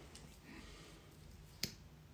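A mascara tube being opened: a single short, sharp click about a second and a half in as the wand comes free of the tube, against faint room tone.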